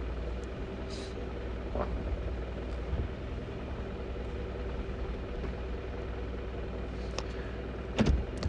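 Vehicle running slowly along a dirt road, heard from inside the cabin: a steady low engine and road rumble, with a couple of faint knocks from the vehicle.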